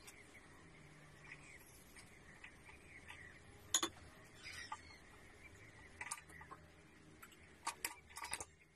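Stir-fry of luffa, baby corn and minced chicken sizzling faintly in a wok, with a few sharp ticks: the loudest a little under four seconds in, more about six seconds in and twice just before the end.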